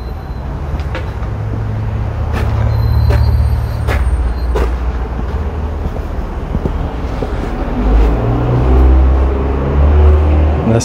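Passing road traffic: a heavy vehicle's engine hum swells twice, with a few light clicks of footsteps on paving.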